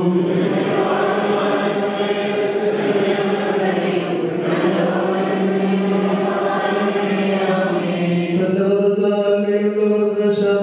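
Group of voices chanting an Orthodox liturgical hymn together on long held notes, the sound becoming clearer and thinner near the end.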